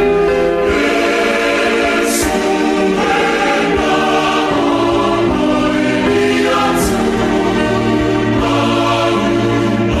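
A choir singing a hymn in slow, sustained chords, the harmony shifting every second or two.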